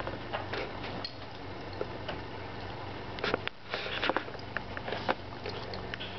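Airedale terrier chewing and moving close to the microphone, giving scattered irregular clicks and crunches over a steady low hum.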